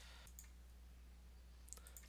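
Near silence: a steady low hum with two faint clicks, about half a second in and near the end.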